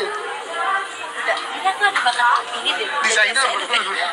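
Only speech: people chatting, voices overlapping.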